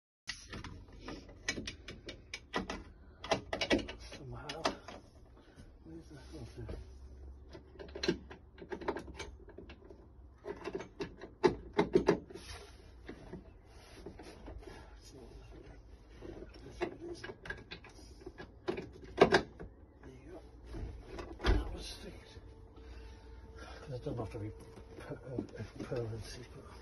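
Irregular clicks, knocks and clunks from a newly fitted van swivel seat and its base being handled and moved by hand, some sharp and loud, scattered throughout.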